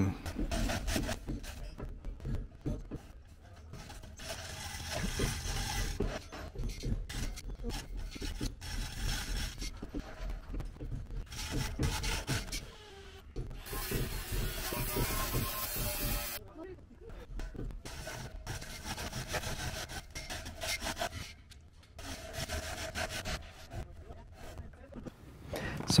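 Steel I-beam scraping and knocking on the tops of concrete-block walls as the crew works it into place, with irregular rubbing and clanks. A loud hiss lasts about two seconds midway.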